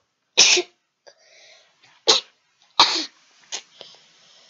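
A young boy coughing three times into his hand, the last two coughs close together, followed by a fainter short one.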